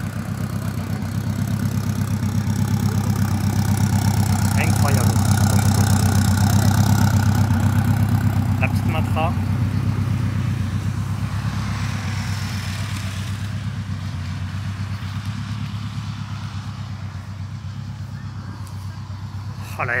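A car engine idling steadily with a low, even beat, loudest a few seconds in and easing off toward the end.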